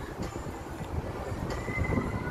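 Outdoor city background noise, a low steady rumble, with a thin high squeal coming in about one and a half seconds in.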